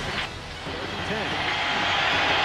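Stadium crowd noise from a televised college football game, a steady roar that swells toward the end, with faint voices underneath.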